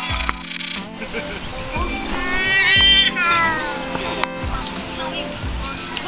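Background music with steady tones, and a high, wavering vocal cry about two seconds in that lasts about a second, with scattered voices around it.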